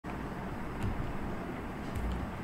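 Steady low background rumble and hiss picked up by an open microphone, with a couple of faint clicks.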